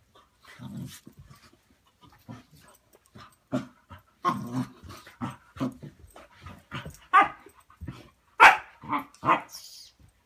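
Two dogs play-fighting, making a run of short huffs and vocal noises that come louder and quicker in the second half, the loudest about eight and a half seconds in. A brief high squeak comes just before the end.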